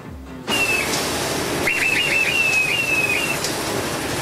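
Fairground ride running: a steady rush of noise, starting about half a second in, with a series of high, thin whistling squeals that slide slightly downward.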